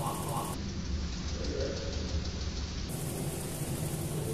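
Steady low rumble and hum of a busy indoor arcade hall, with faint voices in the background.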